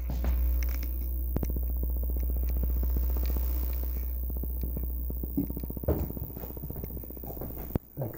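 Steady low electrical hum with a rapid fine crackle of tiny clicks through most of the middle, and a few soft knocks from the camera being handled.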